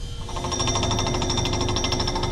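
Hydraulic breaker on an excavator hammering rock on a construction site: a rapid, steady rattling of blows.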